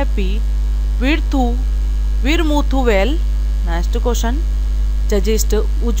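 Loud, steady electrical mains hum, a low drone with a faint buzz above it, running unbroken under a woman's voice.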